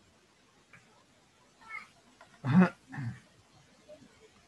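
A few short voice-like calls between stretches of near silence: a faint high one, then two louder short ones about two and a half and three seconds in.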